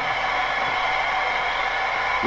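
Steady hiss with a faint, constant high whine, unchanging throughout.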